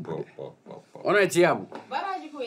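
Speech in Fula: a voice saying a few short syllables, then a louder, longer stretch about a second in whose pitch rises and falls.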